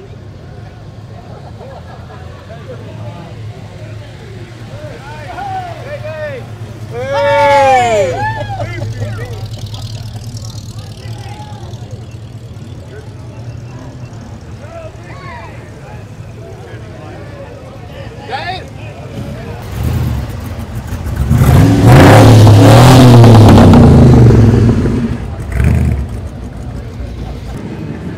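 V8 cars rumbling as they drive slowly past, with a short warbling, siren-like wail about seven seconds in. From about 21 to 25 seconds a V8 passing close by revs loudly.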